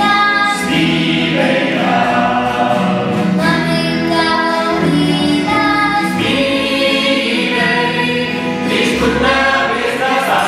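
A small mixed choir of men's, women's and children's voices singing a song together.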